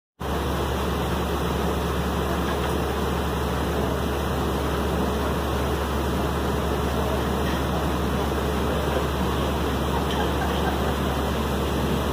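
A ferry boat's engine drones steadily under the rushing noise of its churning wake.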